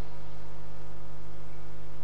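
Steady electrical mains hum made of several fixed tones, unchanging and fairly loud, with nothing else sounding over it.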